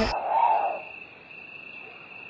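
Music cuts off at the start, leaving a cricket trilling steadily at one high pitch, with a short rising-and-falling lower tone about half a second in.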